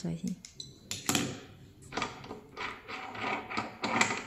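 Small clicks and metallic handling noises from a smart manhole cover's lock and its electronic key being worked by hand, with one sharp click about a second in.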